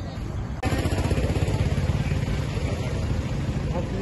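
Rough on-location audio of voices and vehicle engine noise at a roadside. It jumps abruptly louder less than a second in.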